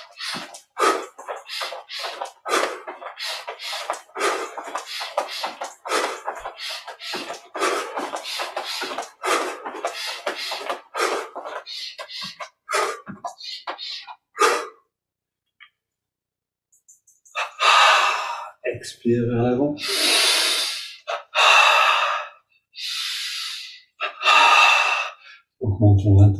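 A man's rhythmic breath puffs while jogging on the spot, about three a second, stopping about fourteen seconds in. After a brief pause come a few long, loud, forceful breaths in and out.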